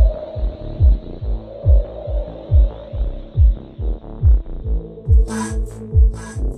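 Electronic dance music driven by a deep kick drum, with each hit dropping in pitch, beating about twice a second over a sustained synth pad. Sharp hi-hat-like hits come in about five seconds in.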